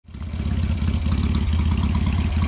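Motorcycle engine idling steadily with an even, fast pulse, fading in at the very start.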